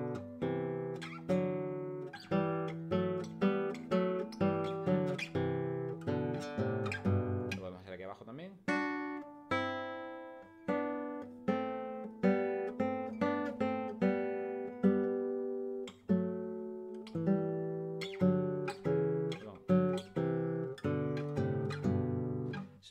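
Nylon-string classical guitar playing two-note thirds that step up and down the G major scale in parallel, plucked notes ringing, with quicker steps at first and near the end and longer-held notes in the middle.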